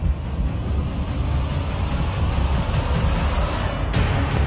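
Title-sequence sound design: a deep, steady rumble under a rising hiss that builds and cuts off sharply just before the end, as a lead-in to the theme music.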